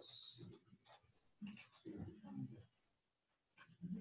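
Faint, indistinct voices in a quiet room, with a short hiss right at the start.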